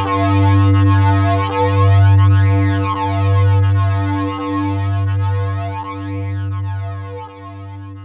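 Instrumental song outro with no vocals: a synthesizer holds a deep bass note that swells in pulses about every second and a half, while a sweeping effect rises and falls above it. The music fades out toward the end.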